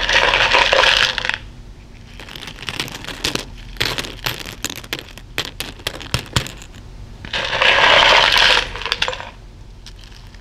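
Plastic buttons, beads and sequins clicking and rattling against each other as a hand stirs and scoops them in a cloth-lined plastic bowl. Dense rattling at the start and again about seven seconds in, each lasting about a second and a half, with scattered single clicks between.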